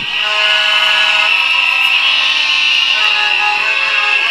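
A steady, sustained tone of several held pitches together, with one strong high tone above them. It starts the moment the speech stops and holds at an even level.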